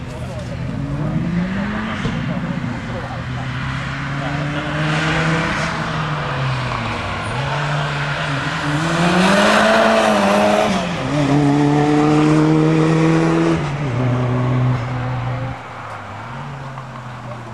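Opel Corsa's C20XE 2.0-litre 16-valve four-cylinder engine driven hard, its pitch rising and falling repeatedly through gear changes and corners. It is loudest as the car passes closest, about nine to fourteen seconds in, then fades near the end.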